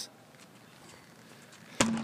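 One sharp heavy thud near the end, a large tractor tire being flipped and landing flat on concrete, after a stretch of faint outdoor background.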